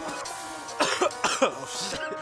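A man coughing several times, short bursts about a second in, over a hip-hop beat's steady sustained notes.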